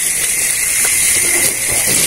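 Tap water running steadily into a stainless steel sink while a fresh catfish is rinsed under it by hand.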